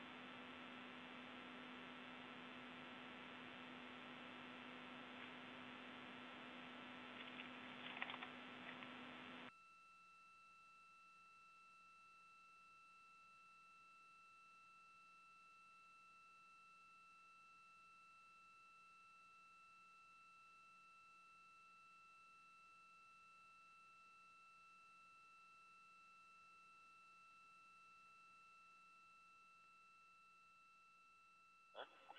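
Near silence: a faint hiss from an open audio line, with a few faint clicks, cuts off suddenly about nine seconds in, leaving only a faint steady high electronic tone.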